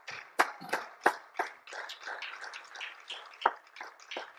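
Irregular hand claps from a few members of a small congregation applauding, several sharp claps a second at uneven spacing.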